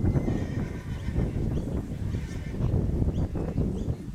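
A horse whinnying over wind rumble on the microphone. The call comes near the start, with a shorter one about two seconds in.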